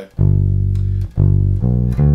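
Fender electric bass played slowly in single notes, picking out a major-chord arpeggio: one note held for about a second, then two shorter notes.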